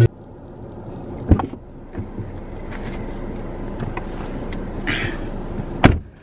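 Steady low rumble inside a car cabin, with a sharp click about a second in and another just before the end.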